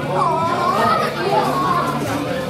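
Many people talking at once over a meal in a large hall, a steady hubbub of overlapping conversation with one voice louder than the rest.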